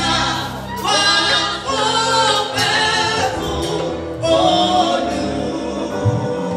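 A woman singing gospel live into a handheld microphone over a band accompaniment, with long held low bass notes beneath her voice.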